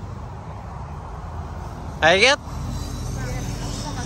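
Steady low rumble of highway traffic passing nearby, with a short spoken word about two seconds in.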